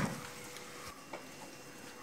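Faint background noise with a thin steady hum and one soft click just after a second in.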